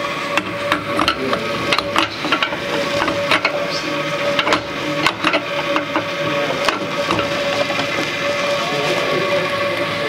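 Irregular clicks and knocks of a metal espresso portafilter being handled and tamped, over a steady mechanical hum with a constant tone.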